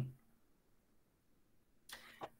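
Near silence: a pause in speech, with the tail of a spoken word at the very start and a faint breath-like onset near the end.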